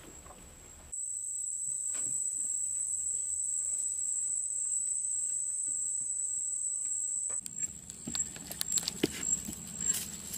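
Loud, steady high-pitched insect buzzing that cuts in about a second in and stops abruptly about seven seconds in. It then continues fainter under irregular light crunches and clicks of bare feet on dry leaf litter.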